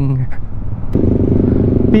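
Motorcycle engine running and low rumbling road and wind noise while riding; about a second in, a steady engine drone comes in over it.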